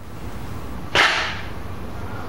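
A single sudden, sharp hissing crack about a second in, fading quickly, over a steady low room background.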